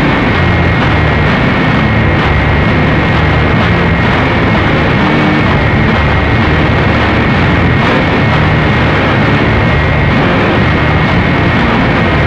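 Harsh noise music: a loud, unbroken wall of distorted noise with a steady high whine and a churning low rumble beneath, with no clear beat or melody.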